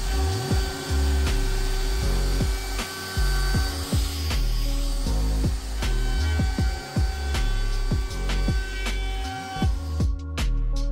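Palm router with a 1/8-inch roundover bit running and cutting along the edge of a poplar board, under background music with a steady beat.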